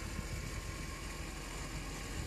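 Car engine idling steadily off to one side, a low, even rumble, most likely the BMW M3 E46's straight-six waiting to start donuts.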